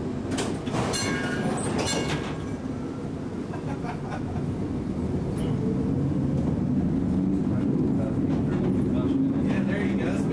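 1944 Pullman-Standard PCC streetcar running on its rails, heard from inside the car: a steady low rumble of traction motors and wheels that grows louder about halfway through.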